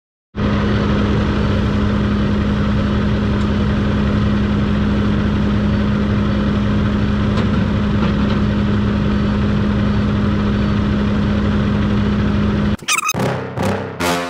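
Semi truck's diesel engine idling steadily with its hood tilted open, a constant drone with a steady hum. About a second before the end, music starts.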